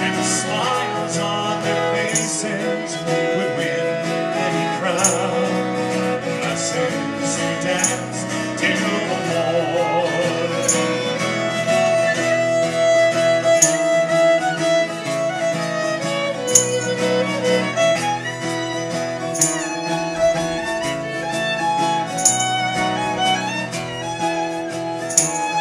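Live acoustic folk band playing an instrumental break: a fiddle carrying the melody over a strummed acoustic guitar.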